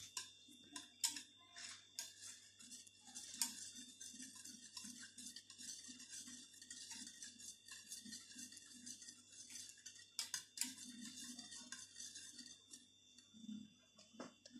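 A wire whisk clicking and scraping against the inside of a stainless steel saucepan as milk and cream are stirred: a faint, rapid, irregular run of small metallic ticks.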